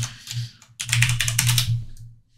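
Computer keyboard being typed: a few keystrokes, then a quick run of about ten clicks in the second half, as a terminal command is entered.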